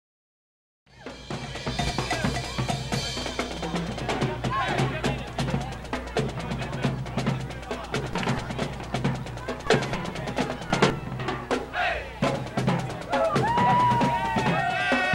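A marching band playing, with drums prominent under saxophones and horns; it starts suddenly about a second in after silence.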